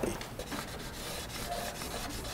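A hand rubbing over paper on a work table: a faint run of soft, scratchy strokes.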